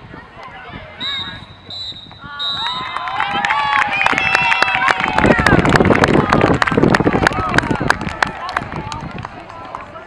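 A referee's whistle blown in three short blasts, then spectators and players cheering, shouting and clapping, loudest midway and tailing off near the end.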